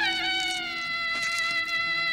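Background score: a solo violin holding one high bowed note that slides slowly downward.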